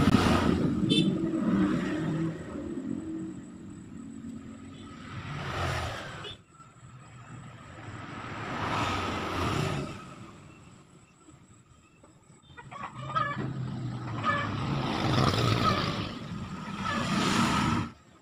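Background of passing road traffic, engines swelling and fading several times, with a bird calling now and then.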